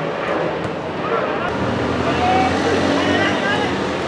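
Distant shouts of players calling across an outdoor football pitch, over a steady low engine hum from a vehicle that grows stronger partway through.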